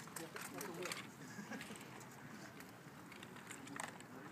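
Faint voices of people talking, with a cluster of sharp knocks in the first second and another near the end.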